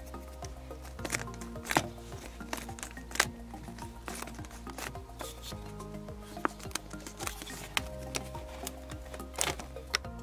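Quiet background music with long held notes, over scattered light clicks and rubbing as fingers squeeze and turn the ribbed black plastic bellows sleeves on a Bosch POF 1400 ACE router's plunge columns.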